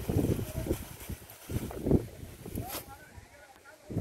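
Short-handled hoe chopping into soil to dig up a ginger clump: dull thuds at the start and again, louder, about two seconds in.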